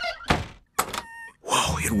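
A door shutting with a heavy thunk: a first knock, then a louder one a moment later. About a second in comes a short rattle with a thin ringing tone, and music comes in near the end.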